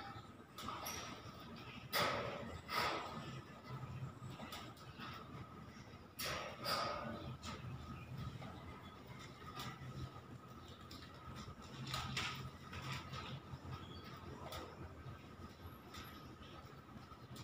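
A long pipe used as a bo staff being swung and spun, giving short, sudden swishes, several in pairs about half a second apart, the loudest a couple of seconds in and again about six seconds in. A thin steady tone and a faint low hum run underneath.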